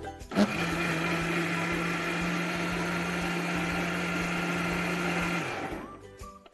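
Electric mixer grinder with a steel jar running, regrinding a wet paste of soaked moong dal with salt, cumin, green chilli and ginger. It starts abruptly about half a second in, runs at a steady pitch, and is switched off near the end, spinning down.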